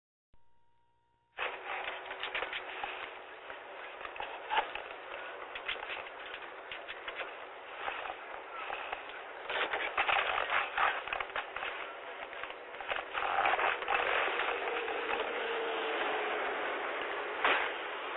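Police dash-cam audio: a short steady beep about half a second in, then a continuous crackling hiss, thin and band-limited, full of clicks and pops.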